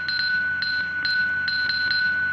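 Sparse electronic music: a steady, sustained high synthesizer tone with a brighter note pulsing over it about twice a second, and no drums.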